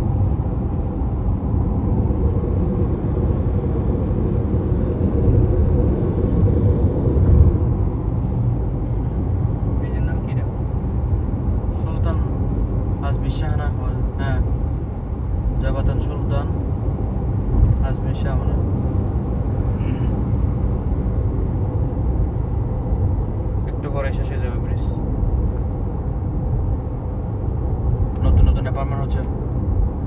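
Steady road and tyre rumble inside the cabin of a moving car, with quiet talking now and then.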